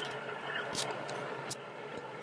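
Steady rushing and churning of hot tub water, with two faint clicks about a second apart.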